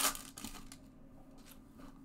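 The plastic wrapper of a Donruss baseball card pack being torn open by hand, with a loud crinkling tear right at the start that fades into softer rustling of the wrapper.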